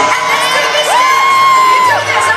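Live pop music from the hall's sound system with an audience cheering; about a second in, a high voice swoops up and holds one note until near the end.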